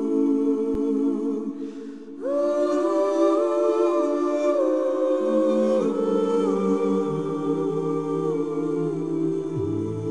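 Soundtrack of a cappella vocal music: several voices humming long held chords that step from one note to the next, dropping out briefly about two seconds in.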